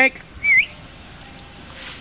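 A short human whistle calling a dog, a single note that dips and then rises in pitch, about half a second in.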